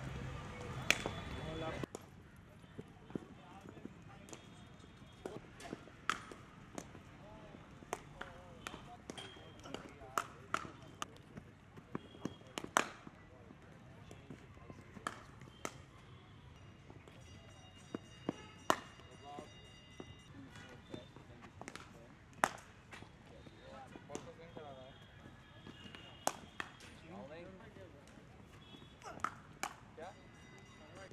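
Cricket net practice: a string of sharp, separate cracks of leather balls striking bats and the pitch, irregularly spaced, over faint background voices.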